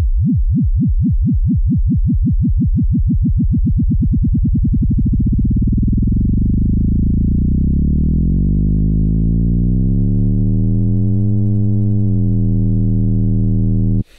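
Sine-wave synth note in Xfer Serum, its pitch swept up and down by a triangle LFO. The LFO is sped up, so the up-and-down warble quickens from a couple of sweeps a second until, about eight seconds in, it blurs into one steady tone with a distinct pitch of its own: the modulation has become fast enough to act as frequency modulation.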